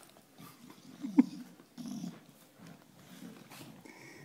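A bulldog growls in short, low bursts right at the microphone, with one sharp, loud sound about a second in.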